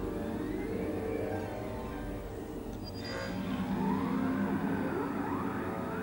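Film soundtrack of sustained music chords under electronic sci-fi machine sound effects from the dart-analysis station: a short high tone about three seconds in, then a cluster of rising and falling whistling pitch glides.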